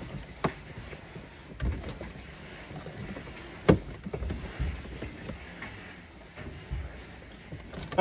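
Boat rocker-switch wiring harness being handled: soft rustling and knocking of wires and crimped connectors, with a few short clicks, the sharpest about three and a half seconds in.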